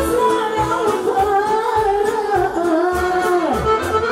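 A woman singing through a microphone over live band music, with accordion and a steady bass beat; her voice holds long, sliding notes.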